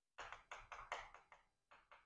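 Chalk tapping and scraping on a chalkboard as handwriting is written: a quick run of faint taps, several a second.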